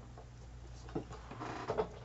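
Faint handling noise: a small click about a second in and a few light clicks and scrapes toward the end, over a low steady hum.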